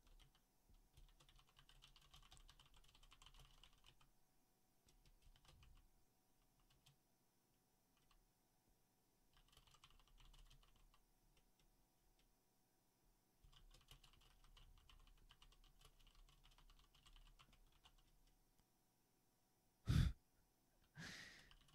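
Faint computer keyboard typing in four runs of quick keystrokes, with short pauses between.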